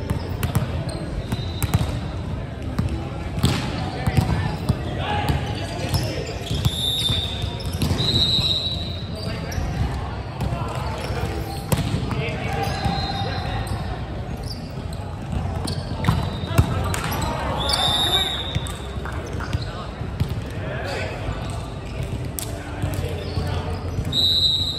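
Indoor volleyball play echoing in a large hall: the ball being struck and bouncing, with repeated sharp smacks and thuds, short high squeaks of shoes on the hardwood court, and players' voices calling out.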